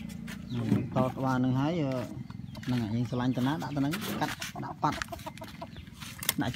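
A man talking in short spurts over a steady low hum that is heard on its own just before he starts.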